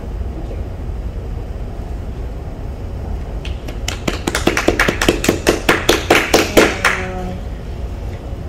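Hand clapping from a small audience at the end of a talk: a short run of sharp, evenly spaced claps, about five or six a second, starting about three and a half seconds in and lasting roughly three seconds, over a steady low room hum.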